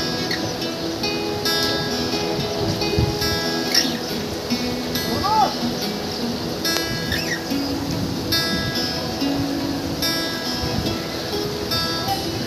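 Solo acoustic guitar playing a melody: single picked notes ringing on one after another.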